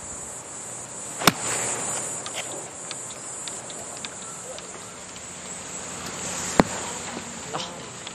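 An iron strikes a golf ball with one sharp click about a second in, over a steady high-pitched chirring of insects. A second sharp click comes near the end.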